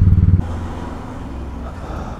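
Royal Enfield Classic 500 single-cylinder engine running on the move, with a low pulsing thump. It cuts off abruptly less than half a second in, leaving a quieter, even background noise.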